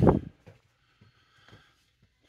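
A short, loud breath-like burst right at the start, then near silence with only faint room tone.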